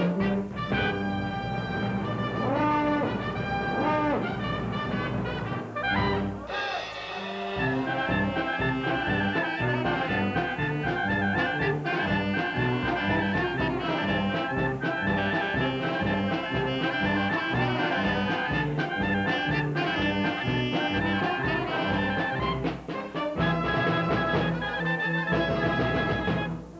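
Brass band of French horns, baritone horns, clarinets, saxophones, trumpets and sousaphones playing a lively paso doble over a steady oom-pah bass. A few swooping sliding notes come in the first few seconds.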